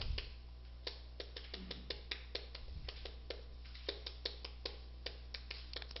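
Chalk writing on a chalkboard: a run of quick, irregular taps and clicks, a few each second, as the chalk strikes and drags across the board, over a faint steady hum.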